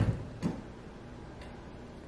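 A few light clicks from small cosmetic products being handled: a sharp one at the start, another about half a second later and a faint one near the middle.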